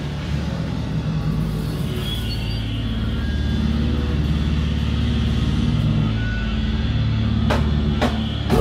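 Amplified electric guitar holding low, sustained droning notes that slowly grow louder, with one sharp drum or cymbal hit near the end.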